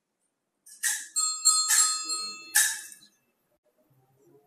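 Altar bells rung three times, about a second apart, at the elevation of the chalice after the consecration.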